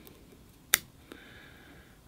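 A single sharp snip of pruning shears cutting through a thin succulent branch of a crown of thorns (Euphorbia milii), about three-quarters of a second in.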